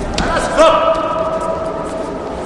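A man's loud shout held for about a second, starting just over half a second in, over a steady murmur of voices in a hall. A sharp knock comes just before the shout.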